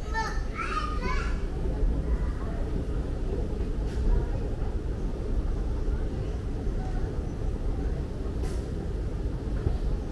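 Steady low rumble of a moving walkway running in a metro station passage, with a small child's voice calling out briefly in the first second.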